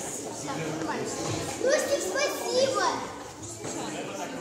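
A group of children talking and exclaiming excitedly, with a few loud, high voices in the middle.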